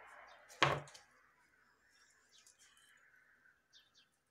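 A single sharp knock about half a second in, as a cement-covered paintbrush is knocked against or set down by a metal pot of liquid cement, followed by a few faint clicks of handling.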